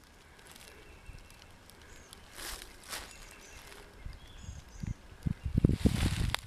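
Quiet woodland ambience: a couple of soft rustles a few seconds in, faint high bird chirps, and a run of low thumps in the last two seconds, like the hand-held camera being handled or the microphone being bumped.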